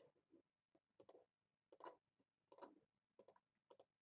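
Faint computer mouse clicks, a dozen or so spread at irregular intervals, in near silence.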